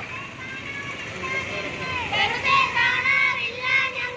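A group of marching women and children chanting in unison; the loud, rhythmic chant starts about halfway, over a murmur of street crowd noise.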